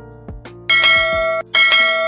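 A notification-bell sound effect chimes twice, about two-thirds of a second in and again just past halfway, each bright ring fading quickly. Background music plays beneath it.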